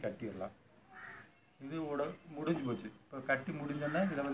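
A man speaking, in short phrases with brief pauses between them.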